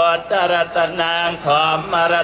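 Theravada Buddhist monks chanting Pali blessing verses in unison, on one steady reciting pitch with syllables in an even rhythm and short breaks between phrases.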